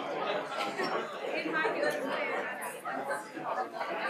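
Indistinct chatter of many people talking at once in a lecture hall while the audience waits for a talk to begin.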